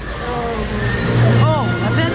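Indistinct voices of riders, with a low steady hum coming in about a second in.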